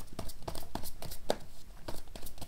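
A tarot deck being shuffled by hand: a quick, irregular run of soft clicks as the cards flick against each other.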